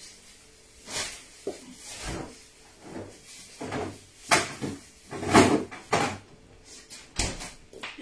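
A run of irregular knocks and clatters in a small kitchen, about half a dozen sharp strikes spread over several seconds, the loudest a little past the middle.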